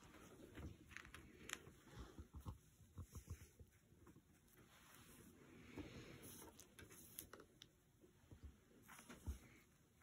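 Near silence, with faint small taps and rustles of hands handling a paintbrush and fabric, a cluster of them early and one sharper tap just after nine seconds.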